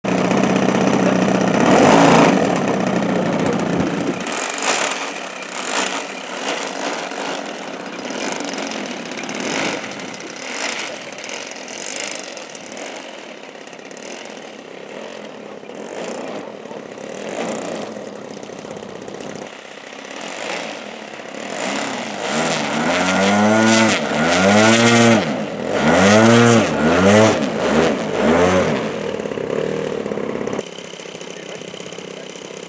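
Model aircraft two-stroke petrol engine, a DLE 35 RA turning a 19x8 propeller, running on the ground. Late on it is revved up and throttled back several times, the pitch rising and falling with each run-up.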